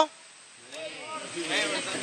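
Faint voices of several people talking in the background, rising out of a short lull about half a second in.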